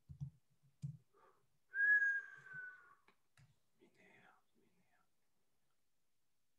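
A man whistling one short note that falls slightly in pitch, about two seconds in. Quiet muttering comes before and after it.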